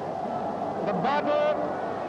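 A large crowd shouting and cheering, many voices blurred into one continuous din, with one voice rising above it in a shout about a second in.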